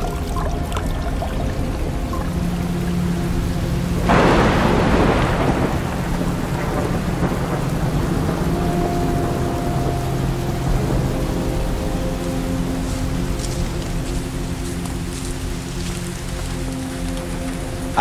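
Steady rain with a clap of thunder about four seconds in that rolls away over a couple of seconds, over soft sustained musical tones.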